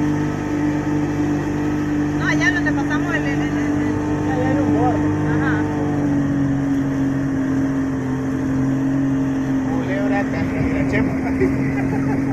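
Two-stroke outboard motor driving a small open boat at steady speed, its pitch dropping slightly about halfway through.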